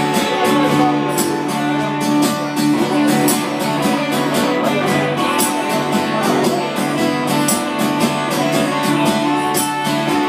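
Live instrumental passage on guitars: a strummed acoustic guitar with an electric guitar playing over it, in a steady, unbroken rhythm.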